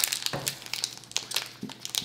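The foil wrapper of a Pokémon booster pack crinkling and crackling as it is torn open by hand, in a quick series of sharp crackles.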